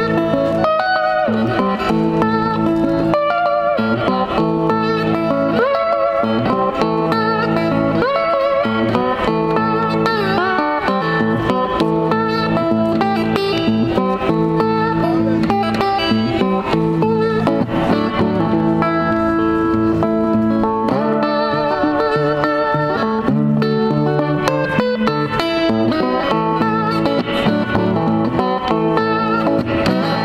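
Metal-bodied resonator guitar played slide-style with fingerpicking: a continuous blues instrumental of picked notes, some of them gliding into pitch under the slide.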